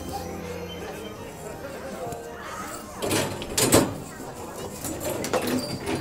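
Fairground background: distant voices and faint music over a steady din, with two brief loud rushes of noise a little past halfway.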